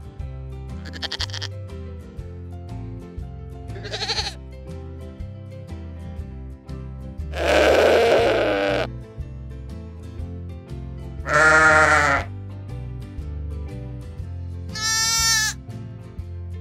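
Goats bleating, about five separate calls a few seconds apart, the two loudest about eight and eleven seconds in and the last one higher-pitched. Background music with a steady beat plays underneath.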